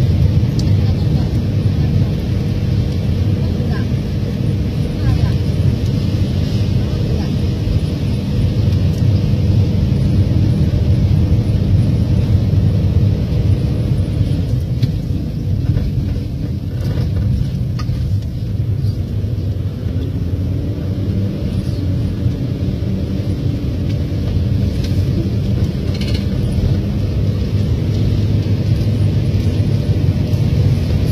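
Steady low rumble of a vehicle's engine and road noise, heard from inside the cabin while driving.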